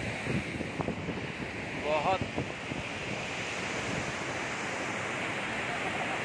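Steady rushing of a large waterfall, with wind buffeting the microphone in irregular low gusts.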